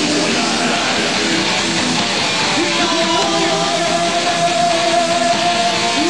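Heavy metal band playing live at full volume: distorted electric guitars over a drum kit. A long held note rings out through the second half.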